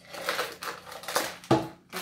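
Crinkling of a small plastic surprise-packet wrapper and clicks of plastic toy pieces being handled, in a run of quick rustles and taps.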